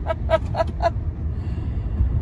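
A woman laughing in a quick run of short breathy pulses, about four a second, that stops about a second in. Under it is the steady low rumble of road noise inside a moving car.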